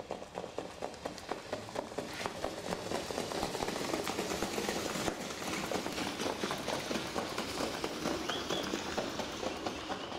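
Rapid hoofbeats of a harness trotter pulling a sulky at speed on a sand track, growing louder as the horse passes close around the middle and easing off near the end.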